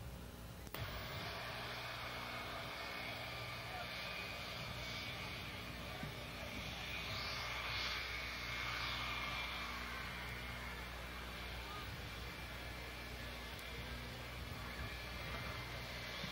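Jet aircraft engines heard from a distance as the plane comes in over the runway: a steady rushing noise that swells slightly in the middle, under a faint crowd murmur. It starts with a click under a second in.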